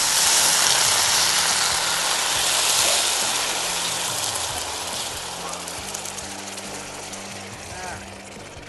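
Cold water poured into a hot saucepan of rice pilaf that was toasting close to burning, hissing loudly as it hits the hot pan and dying down gradually as the pan cools.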